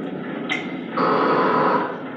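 Spirit box sweeping through radio stations: a hiss of radio static that grows louder and fuller about a second in, with a brief tick just before.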